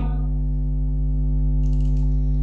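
Steady electrical mains hum with a stack of overtones, and a brief faint rustle near the end.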